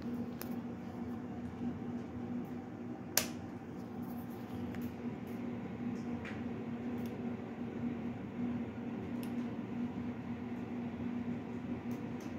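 A faint, steady low hum with a few light clicks, the sharpest about three seconds in.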